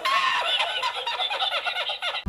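A man laughing hard in a high, rapid, squealing cackle from an inserted meme clip, thin-sounding with no low end.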